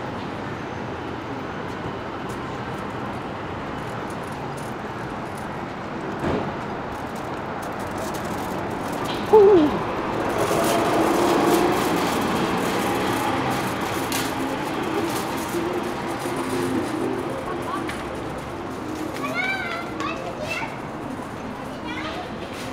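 Steady city street noise with passersby talking. A short loud sound comes about nine seconds in, and a child's high voice calls out near the end.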